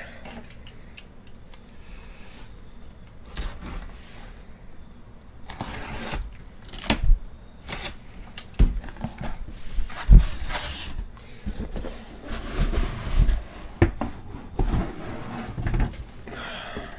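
Cardboard shipping case being opened by hand: irregular scraping and rustling of the cardboard flaps, with scattered knocks and thumps. The loudest is a thump about ten seconds in, followed by a longer scrape.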